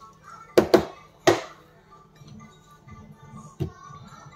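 Three sharp plastic knocks as a bottle brush is put down at the sink, two close together and a third about half a second later, then a faint click. Faint background music runs under it.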